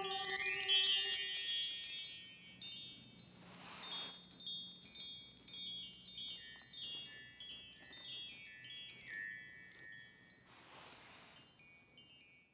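Hanging brass-coloured chime tubes set ringing in a quick cascade of high, bright notes, then ringing on in scattered, irregular strikes that thin out and die away near the end. A choir's last held chord fades out in the first second or so.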